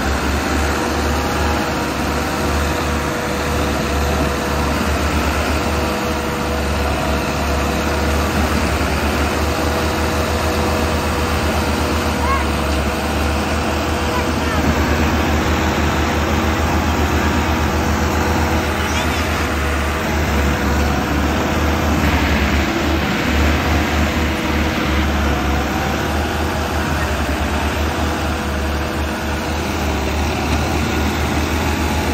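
Two diesel tractors, a Massey Ferguson 385 and a red Russian-built tractor, running hard under full load as they pull against each other, with a steady heavy engine drone. A rear tyre spins in the dirt under the strain.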